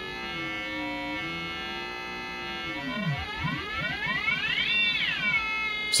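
Barton Musical Circuits BMC053 four-quadrant multiplier in multiplier (ring-mod) mode, a sawtooth multiplied by a triangle wave. It gives a synth tone made of many pitches. As the modulating frequency is turned up, the pitches slide apart and cross, some rising and some falling, peak about five seconds in and then ease back slightly.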